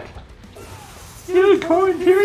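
Fight-scene soundtrack from an animated series: quieter mechanical sound effects, then a character's voice crying out about one and a half seconds in.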